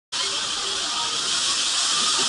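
Steady, loud hiss of water running and spraying through a waterslide, with faint voices underneath.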